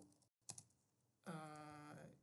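A couple of faint, short computer keyboard keystrokes, then a drawn-out hesitant 'uh' from a man's voice near the end.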